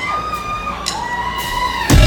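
Live rock band starting a song: a few held, bending tones play over a quiet background, then near the end the full band comes in loud with drums and bass.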